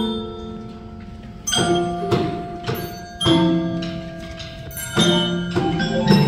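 Tuned bells or chimes played by a group of children: struck notes, several at a time, each ringing on after it is hit. The notes are sparse in the first second or so, then come again and louder from about a second and a half in.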